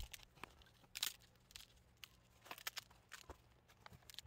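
Scattered sharp clicks and crackles from a cured epoxy-resin and cloth composite shell being flexed and pried off its taped mold by hand. The loudest crack comes about a second in and a quick cluster follows near the middle.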